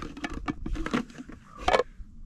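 A nesting camp pot set being handled, with light clicks and knocks as a cup is pulled out from inside its bowl. A louder clatter comes near the end.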